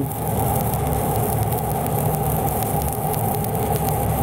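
Stick welding arc of a 3/32-inch E7018 electrode running a fill pass on steel pipe: a steady crackle with many fine pops.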